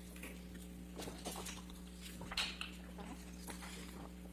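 Low courtroom room sound: a steady electrical hum with scattered soft knocks and rustles as copies of an exhibit are handed out.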